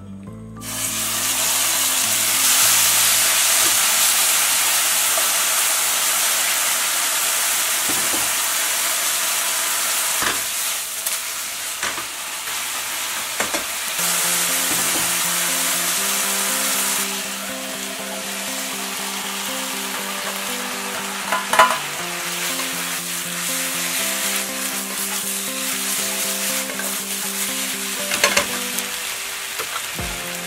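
Marinated sliced pork belly hitting hot oil in a nonstick frying pan: a loud sizzle that starts suddenly about half a second in, easing somewhat in the second half. Now and then the utensil clicks and knocks against the pan as the meat is stirred, the sharpest knock about two thirds of the way through.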